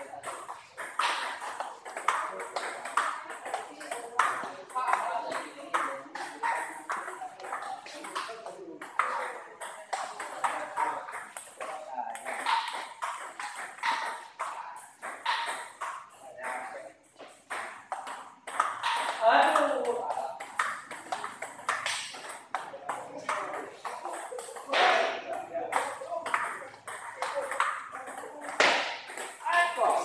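Table tennis balls clicking off paddles and tables in back-and-forth rallies, from several tables at once, with people's voices in the background.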